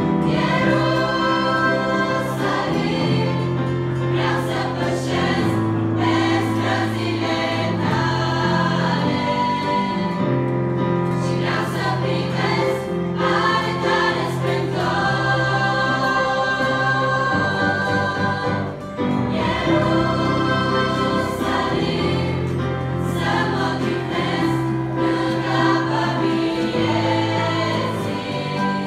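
Girls' choir singing a hymn in parts, with steady held low notes beneath the voices.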